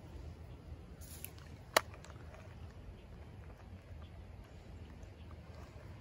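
Quiet outdoor background with a low steady rumble, broken by one sharp click a little under two seconds in.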